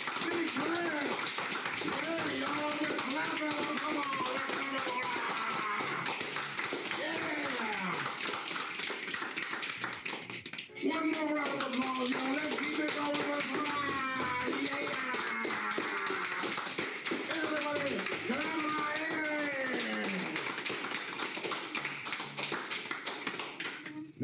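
A small room of people clapping steadily, with voices calling out and singing over the claps. The sound drops briefly about halfway through, then picks up again.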